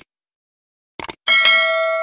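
Subscribe-button sound effect: a short mouse click about a second in, then a notification bell ding whose several steady tones ring on, slowly fading.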